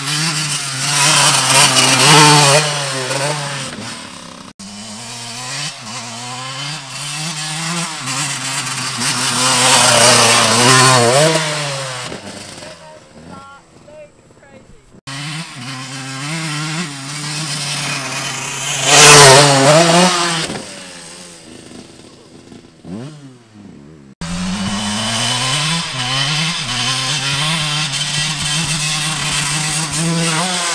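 Dirt bike engine revving hard as the bike rides past several times, its pitch rising and falling with the throttle and loudest as it passes close. Between passes a steadier engine drone continues underneath.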